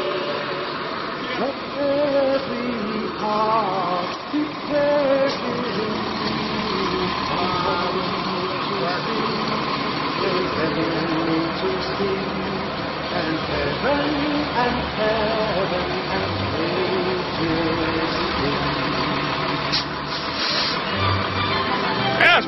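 Large vehicle engines running steadily as a tow truck pulls a stuck RV out of a ditch, with people's voices and held, music-like notes over them.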